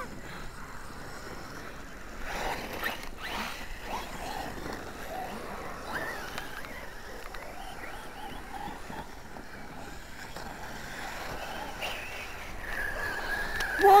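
Radio-controlled buggy driving on dirt, its electric motor whining in short bursts that rise and fall in pitch as it speeds up and slows, over a steady rush of noise.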